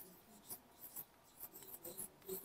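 Marker pen writing on a whiteboard: faint, short scratchy strokes, a few per second, as letters are drawn.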